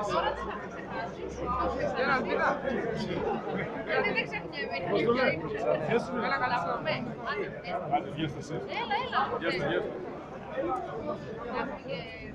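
Several people talking at once at close range, overlapping chatter.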